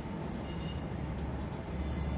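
A steady low background rumble or hum, with no distinct events.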